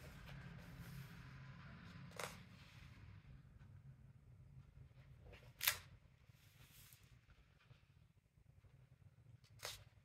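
Quiet paper handling as the pages of a coloring book are turned. A soft paper rustle in the first few seconds, then three short, sharp paper flicks: about two seconds in, just past halfway (the loudest), and near the end.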